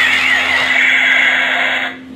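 Electronic toy sound effects: many overlapping warbling tones sweeping up and down, over a steady hum, cutting off suddenly near the end.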